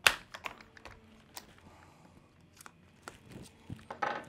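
Small clicks and taps of a hex driver on plastic and metal parts as hinge pins are pushed out of an RC motorcycle's rear suspension, with one sharp click at the very start and a few faint ones after.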